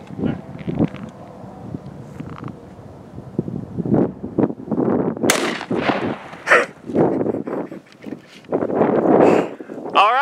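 A 5.56 rifle fires a shot about five seconds in, a single sudden sharp report.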